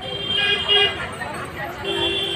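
A vehicle horn honking amid street traffic and crowd chatter: a steady honk about a third of a second in, lasting about half a second, and another starting near the end.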